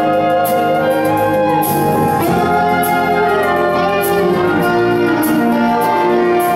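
Full concert wind band playing an instrumental passage, brass to the fore, with long held chords that shift every second or so and a few sharp percussion strikes.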